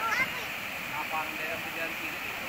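Steady rush of a flooded river in spate, with faint voices of people talking over it.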